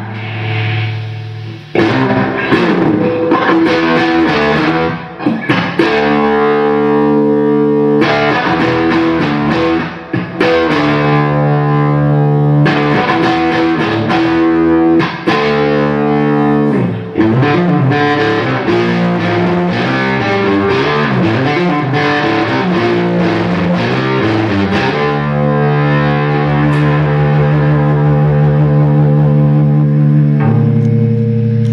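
Fender Stratocaster electric guitar played through a fuzz pedal and a Uni-Vibe-style Gypsy-Vibe into an amplifier: distorted held notes and chords with a few short breaks, ending on a long sustained chord.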